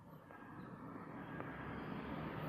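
A low rumbling whoosh that grows steadily louder, an intro sound effect building under the opening title.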